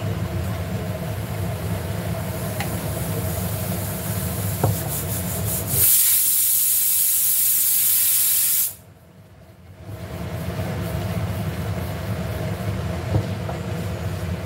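Pressure cooker venting steam in a loud, even hiss for about three seconds, over a steady low hum. The hiss cuts off suddenly and everything drops away for about a second before the hum comes back.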